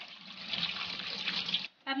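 Cold tap water running onto boiled spaghetti in a steel colander, a steady splashing hiss, to cool the noodles after boiling. It cuts off suddenly near the end.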